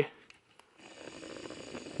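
Near silence for a moment, then a faint steady hiss from about a second in.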